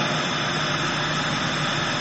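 Steady rushing background noise with no distinct events, such as room or recording hiss, holding level throughout.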